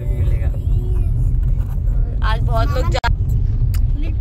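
Steady low rumble of a car's engine and road noise heard from inside the moving car, with voices talking over it about two seconds in.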